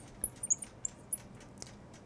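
Marker tip squeaking and ticking on a glass lightboard as words are written: several short, high squeaks through the first second or so, then a few light ticks.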